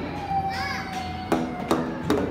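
Two pitched knocks of a mallet on tuned tubes about a second and a half in, each ringing briefly, over children's voices.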